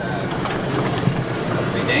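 Utility side-by-side (UTV) on the move, its engine and driving noise heard from inside the cab as a steady, dense rumble.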